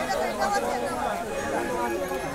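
Several people talking at once: chatter between customers and a seller at a street stall.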